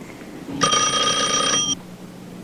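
Telephone ringing: a single ring lasting about a second, starting half a second in and cutting off suddenly.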